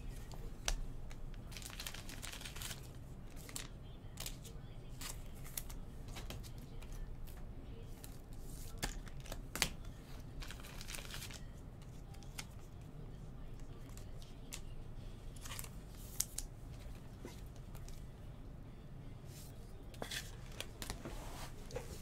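Glossy baseball trading cards being handled: soft sliding rustles and small scattered clicks as cards are flipped off a stack and set down on piles.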